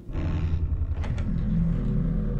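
Heavy metal vault door being unlocked and opened: a low steady rumble that starts suddenly, with a few faint clicks about a second in.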